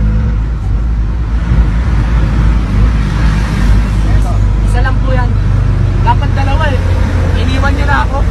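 Steady low engine drone and road rumble of a moving vehicle, heard from inside the passenger cabin. Voices call out over it a few times in the second half.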